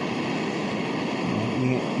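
Handheld butane gas torch flame hissing steadily as it plays against the side of an aluminium kettle of water that is near the boil.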